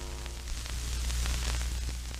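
Static-noise sound effect of a logo sting: a steady radio-like hiss over a deep hum, swelling slightly toward the middle, while the ringing tones of an opening hit fade out in the first half second.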